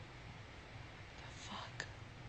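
Quiet room tone with a steady low hum, a faint whispered breath about one and a half seconds in, and a single short click just after.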